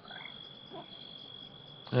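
A faint, steady high-pitched insect trill, held on one unbroken tone.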